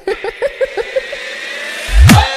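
A DJ remix build-up: a short vocal sample, heard as a laugh, stutters rapidly, then slows and fades under a rising noise sweep. A heavy bass drop hits right at the end.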